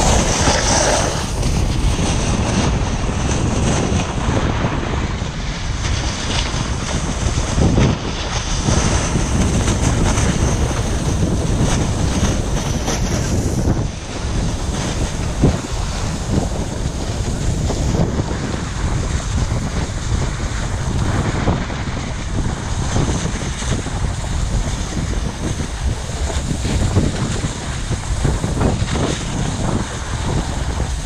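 Wind buffeting an action camera's microphone during a fast run down a groomed piste, mixed with the scrape of a snowboard's edges on hard-packed snow. The rushing noise is loud and steady throughout, with an uneven flutter.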